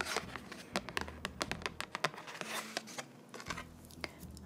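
Fingertips and nails handling a printed photo card, a run of light taps and scratches on the card, over faint muffled background music.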